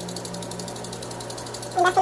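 Chopped green onions and red peppers sizzling quietly in a skillet, over a steady low hum. A woman's voice starts near the end.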